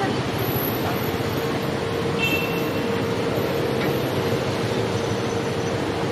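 Busy street traffic on a wet road: a steady wash of passing cars and motorcycles, with a steady engine hum underneath.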